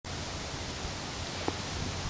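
Steady outdoor background noise, an even hiss, with a faint click about one and a half seconds in.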